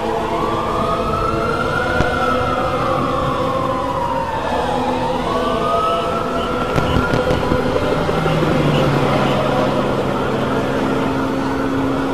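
A siren wailing slowly up and down over constant background noise. A low steady hum joins about eight seconds in.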